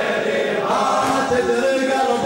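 Men's voices chanting a Shia Muharram mourning lament (latmiya), several voices together.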